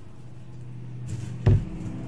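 A hand moving paper squares of coloured rice on a tabletop: a brief rustle about a second in, then a single knock on the table about a second and a half in. A low steady hum runs underneath.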